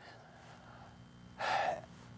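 A man's quick, audible intake of breath, about a second and a half in, after a short pause in quiet room tone.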